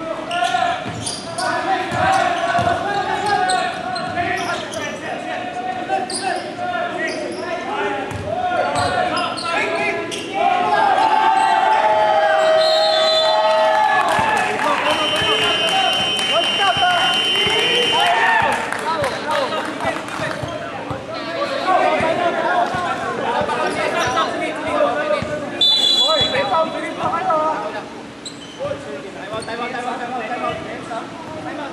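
Basketball game play on a hardwood court in a large, echoing gym: the ball bouncing, with players' and onlookers' voices throughout and a few high sustained tones around the middle.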